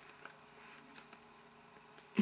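Near silence, with a few faint soft clicks of a mouth chewing a wad of stretchy putty.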